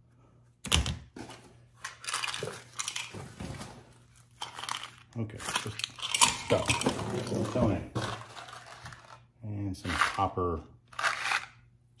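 Small items being handled and rummaged in a box: a sharp knock about a second in, then irregular rustling, crinkling and clattering of objects and packaging. A little speech comes near the end.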